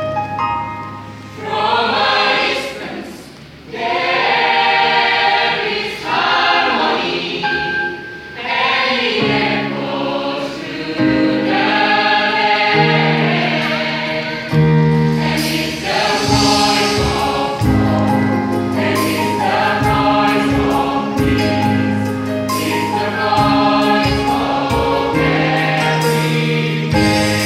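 Mixed choir of young men and women singing a gospel song in harmony, with a short lull about three seconds in.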